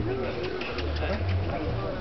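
Indistinct voices of people talking, over a low rumble that comes and goes.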